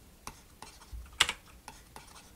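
A scatter of light, sharp clicks and taps at a desk, the sharpest just past a second in.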